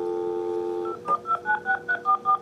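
Telephone on speakerphone: a steady dial tone for about the first second, then touch-tone keypad beeps as a phone number is dialed, about five quick beeps a second.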